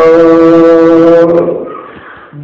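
A man's voice holding one long, steady chanted note in a devotional chant, fading out about a second and a half in.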